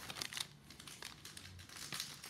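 Trading cards and a foil pack wrapper handled by hand: light crinkling and rustling with small clicks, busiest in the first half second.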